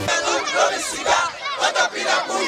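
A crowd of many voices shouting and calling over one another, pitches sliding up and down.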